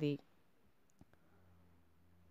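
A single faint, sharp click about a second in, followed by a faint low steady hum, after the last word of speech trails off at the start.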